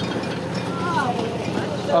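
Tractor engine running steadily as it pulls a bulb planter through lawn turf, with a faint voice about a second in.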